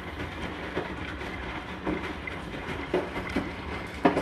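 Hotpoint NSWR843C washing machine on its final rinse: steady motor hum as the drum turns, with the wet laundry falling in the drum about once a second.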